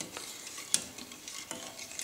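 Wooden spoon stirring a hot milk, cream and sugar mixture in a stainless steel pot, with light taps and scrapes against the pot and one sharper knock about three-quarters of a second in.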